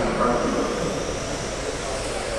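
Electric 1/12-scale GT12 RC pan cars racing on a carpet track, their motors giving a steady high whine that rises and falls as the cars pass, with the echo of a large hall.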